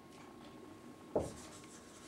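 Marker pen writing on a whiteboard: quiet scratchy strokes, with one short knock about a second in as the marker meets the board.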